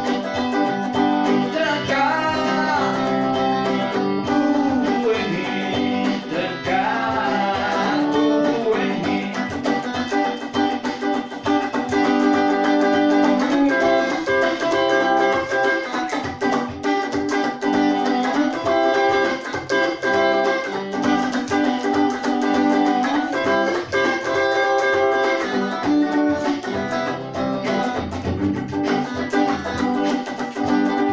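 Electric guitar playing an instrumental passage: bending lead notes in the first several seconds, then held notes and chords that change every second or two.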